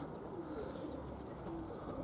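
Domestic pigeons cooing faintly, a few soft low calls.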